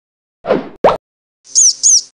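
Cartoon sound effects: a quick falling swoop and a rising bloop, like two plops, about half a second in, then two short high chirps near the end.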